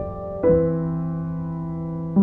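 Slow, soft piano music: held notes, with a new chord struck about half a second in and left to ring.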